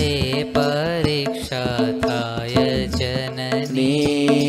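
A man singing a Gujarati devotional kirtan in long, wavering melismatic notes without clear words, over a steady accompanying drone.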